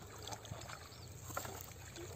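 Bare feet wading through shallow muddy water: a few small splashes, the sharpest about two-thirds of the way in.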